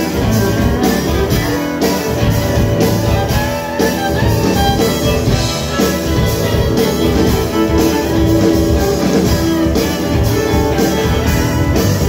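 Live rock band playing an instrumental passage: electric guitars and a bowed violin over bass and a drum kit keeping a steady beat.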